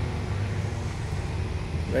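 A pack of four-wheelers (ATVs) passing on the road, their engines a steady low drone.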